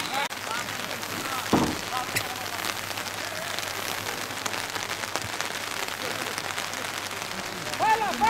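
Steady rain falling, with many small drops ticking close by. A short shout is heard about one and a half seconds in.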